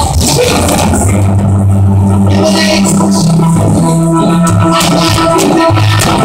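Loud live church band music: long, stepping bass-guitar notes under sharp percussion hits.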